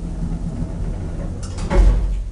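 Schindler traction elevator running with a steady low mechanical hum, and a louder low thump near the end.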